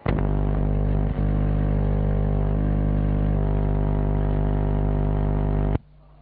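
Loud, steady low electrical buzz from the sound system, starting and cutting off suddenly, with a brief click about a second in.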